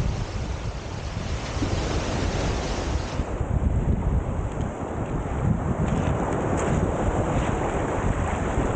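Wind buffeting the camera microphone with a heavy low rumble, over small Lake Superior waves washing onto a pebble beach.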